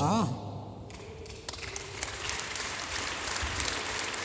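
Audience applauding: steady clapping from many hands that starts about a second and a half in and carries on.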